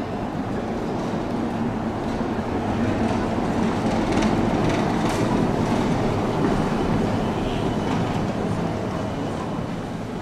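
A red city bus passing close by on a cobbled street, its rumble building to a peak in the middle and fading toward the end.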